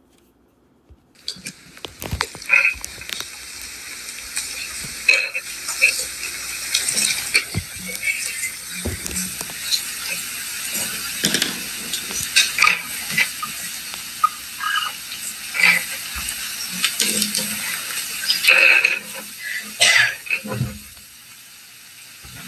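Hissy room noise from a meeting-hall recording: a steady hiss with scattered clicks, knocks and rustles and faint murmuring. It starts about a second in, after a moment of near silence.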